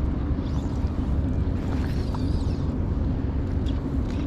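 Steady low drone of a boat engine carrying over the water, with wind on the microphone.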